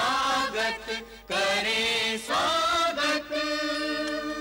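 Devotional soundtrack music with voices chanting in chorus, holding long notes and sliding between them.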